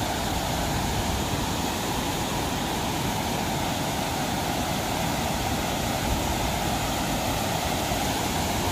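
Water pouring over the stepped spillway of a dam weir, a steady, unchanging rush.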